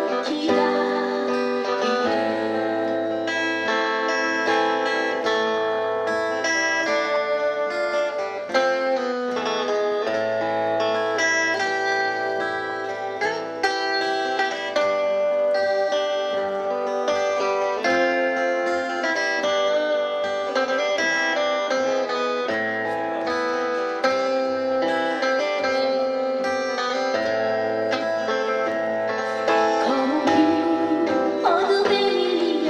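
Acoustic guitars playing an instrumental break in a slow ballad, fingerpicked notes ringing together without a voice; singing comes back in right at the end.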